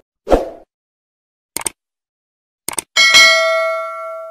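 Sound effects of a subscribe-button animation: a thump about a third of a second in, a single mouse click, then a quick double click. Just before the end a notification-bell ding rings out, its several tones fading slowly.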